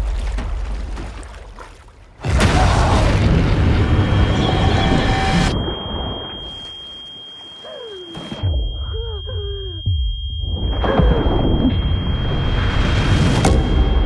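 Trailer sound design: a sudden loud boom about two seconds in opens on dense rushing, churning water noise under a held high tone. Near the middle it drops to a muffled, underwater-like stretch with a few gliding pitched sounds, then the rushing noise builds again.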